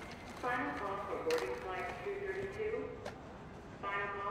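A wordless voice holding steady pitched notes in short steps, with a couple of faint clicks.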